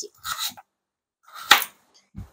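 Kitchen knife cutting through a carrot onto a cutting board, with one sharp knock about one and a half seconds in as the blade hits the board.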